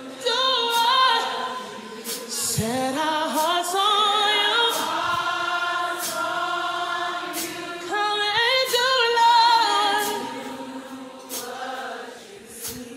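Gospel choir singing long, wavering held notes that swell and fade.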